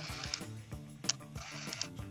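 Small electric motor inside a Premier PC-645 35mm compact film camera whirring in two short bursts about a second apart, over background music.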